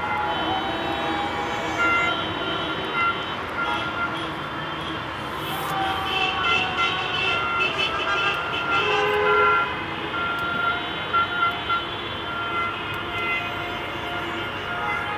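Many car horns honking in overlapping short and long blasts at several pitches, over a bed of traffic noise: the celebratory honking of a car parade after a football win.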